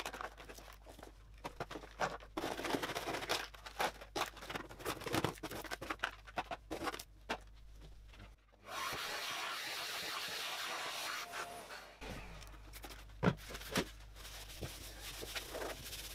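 Plastic makeup items (palettes, pencils, packets of false lashes) being lifted out of a drawer by hand, with many small clicks, knocks and rustles. A little past halfway comes a steady hiss lasting a few seconds, then light rubbing and a few knocks.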